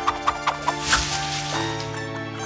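A quick string of about six short clucking animal calls in the first second, as a cartoon sound effect over steady background music, which carries on alone after that.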